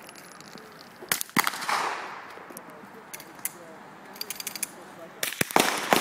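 Gunshots from other shooters on an outdoor range: two sharp cracks a little over a second in, the second with a rolling echo, and a quick run of sharp reports near the end. Lighter clicks fall in between.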